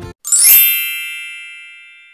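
Bright chime sound effect: a quick upward shimmer into a ringing ding that fades away over about two seconds, just after the background music cuts off.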